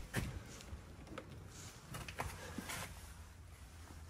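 Quiet room with a low steady hum and a few faint, short knocks and rustles of handling as someone leans into an open car doorway.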